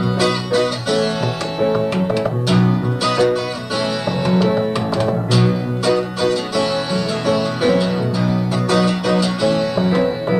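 A 12-string acoustic guitar and a baby grand piano playing together unplugged, an instrumental passage with a busy stream of picked and struck notes.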